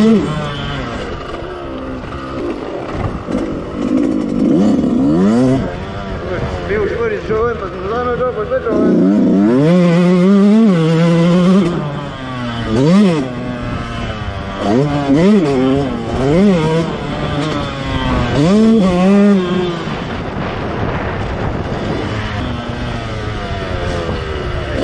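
Yamaha dirt bike engine heard from on board while ridden, revving up and dropping back again and again through the gears. It runs steadily at first, then climbs in long rises, and in the second half gives several short, sharp rev blips a second or two apart.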